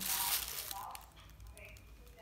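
Plastic film crinkling as it is pulled back off a steel pot, loudest in the first half second, followed by faint handling sounds.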